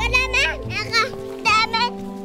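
A young child's high voice calling out in three short bursts, over background music.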